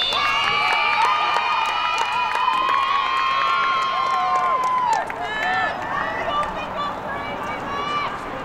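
Young women's voices shouting and cheering in long, high held calls, with short sharp clicks scattered through; the cheering dies down after about five seconds, leaving a few shorter shouts.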